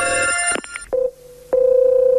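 Telephone line sounds after a call is hung up. An electronic tone ends about half a second in and is followed by a few clicks and a short beep. Then, from a click about midway, comes a steady telephone tone.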